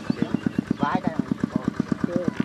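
A small engine running steadily, with a rapid, even putter of about twelve beats a second.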